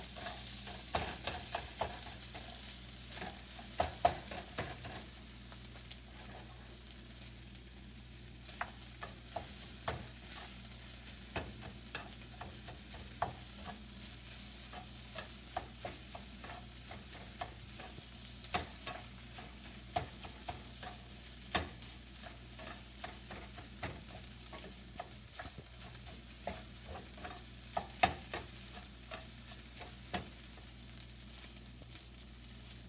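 Fried rice with egg sizzling faintly and steadily in a nonstick frying pan, with irregular knocks and scrapes of a utensil stirring the rice against the pan.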